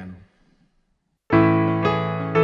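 Vault Caesar MK2 digital piano playing its acoustic grand piano tone: after a short pause, a loud chord is struck about a second and a quarter in, with another note struck about half a second later, ringing on.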